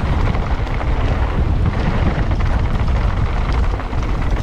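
Wind buffeting an action camera's microphone over the roar of mountain bike tyres rolling fast on loose gravel, with a steady heavy rumble and many small clicks and rattles from stones and the bike.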